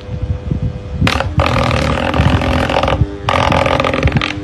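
Electric desk fan running: a steady motor hum with the air blowing and rumbling on the microphone. Two longer, louder rushes of noise come about 1.5 s in and again at about 3.3 s.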